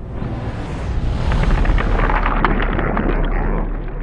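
Long, low rumbling boom with faint crackle: a slowed-down 12-gauge shotgun blast and impact played under slow-motion footage. The hiss on top dulls a little past halfway.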